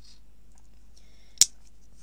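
A single sharp snip about one and a half seconds in: flush cutters cutting a freshly wound jump ring off a small coil of craft wire.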